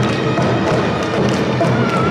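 Awa odori hayashi band playing live: taiko drums beating a steady repeated rhythm, with a wavering bamboo flute line above.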